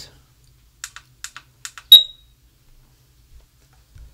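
The setting button on a SadoTech RingPoint driveway alert receiver is pressed in a quick run of clicks, then the receiver gives one loud, short, high beep about two seconds in. The receiver's LED goes out, marking its exit from zone pairing mode.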